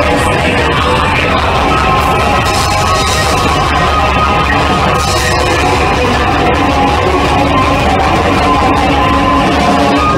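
A post-punk band playing live at full volume, guitars and drums in a dense, steady wall of sound with a heavy low end, recorded from the audience.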